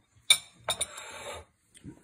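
A metal spoon clinks against a ceramic plate as it is set down: one sharp clink, then two quick ones, followed by a short soft noise.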